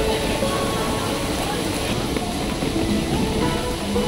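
Background music: a melody of held notes moving from pitch to pitch over a steady hiss.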